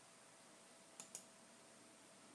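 Two quick clicks of a wireless computer mouse button, a double-click about a second in, over faint room hiss.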